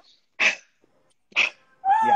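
A woman laughing breathlessly in short, sharp gasps about a second apart, ending in a brief high-pitched squeal of laughter near the end.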